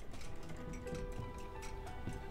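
Quiet film score with long held notes over steady clock-like ticking, about three or four ticks a second.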